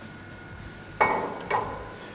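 A steel press brake tool being set down on metal: a sharp metallic clink with a brief ring about a second in, then a lighter second clink half a second later.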